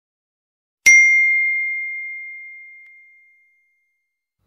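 A single bell-like ding, the notification-bell sound effect of a subscribe animation. It is struck about a second in and rings out on one steady tone that fades away over about two and a half seconds.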